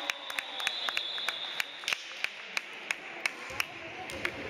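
Scattered handclaps from a few spectators in a gym, irregular and several a second, with a steady high tone that stops about two seconds in.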